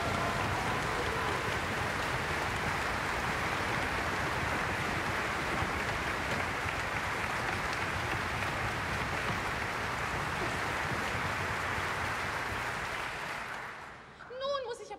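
Theatre audience applauding, a dense steady clapping that dies away near the end.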